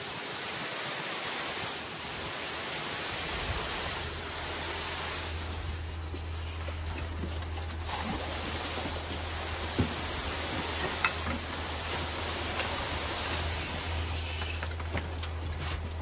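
Concrete being pumped through a boom hose into a block wall form: a steady rushing noise, with a low steady hum from the pump coming in about three and a half seconds in. Two sharp knocks sound near the middle.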